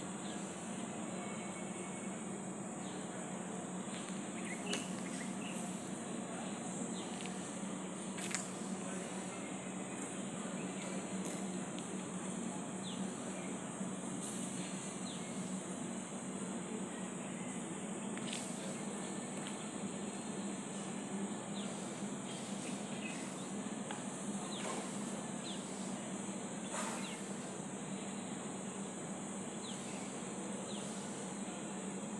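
Steady outdoor ambience: an even hiss with a constant high-pitched drone, broken by scattered brief chirps and ticks.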